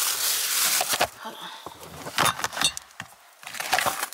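Shopping bags rustling and items knocking together as they are gathered up out of a car: a burst of rustling at the start, then several sharp knocks and clicks.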